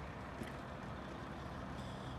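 Steady outdoor background noise: a low, even rumble with a faint hiss and no distinct events.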